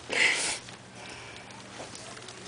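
A short, sharp sniff close to the microphone in the first half second, followed by quiet store room tone with a faint steady hum.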